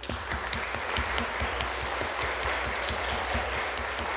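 Applause from a church congregation of schoolchildren: many hands clapping steadily.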